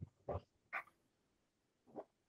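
Near silence broken by three brief, faint voice-like sounds spread across the two seconds.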